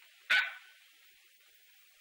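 A single short dog bark about a third of a second in, over faint steady hiss.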